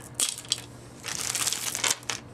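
A clear plastic zip bag crinkling as strands of faux pearls are handled: a few short rustles, then a steadier crinkle in the second half, with a sharp click of beads near the end.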